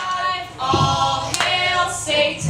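Unaccompanied singing into a PA, with long held notes and no instruments behind it. A single sharp click cuts through about a second and a half in.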